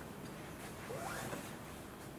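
Faint rustling and handling noise in a quiet room, with a short, faint rising squeak about a second in.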